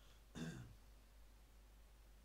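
A man clears his throat once, briefly, about half a second in; otherwise near silence.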